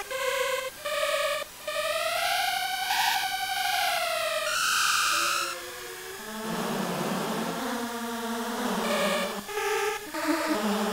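Electronic synthesized tones from a sound-art column: short stepped notes, then a long glide that rises and falls in pitch, a bright high tone about five seconds in, and lower, rougher notes in the second half.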